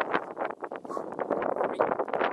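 Wind buffeting the camera's microphone in quick, irregular gusts.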